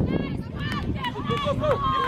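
Several voices calling out across a soccer field during play, over a steady low rumble.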